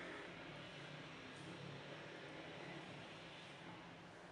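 Faint steady room noise: an even hiss with a low hum underneath, and no distinct event.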